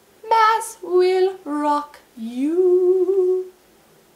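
A woman's voice singing a short four-note phrase: three short falling notes, then a last note that slides up and is held for about a second.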